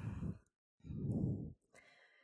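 A woman's breath, a short sigh into her microphone lasting under a second, about a second in, between sentences of her talk.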